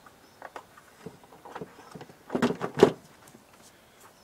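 Handling knocks and rattles of a metal-edged seat box drawer unit being set down and pressed onto its base: a few light clicks, then a louder clatter a little after halfway.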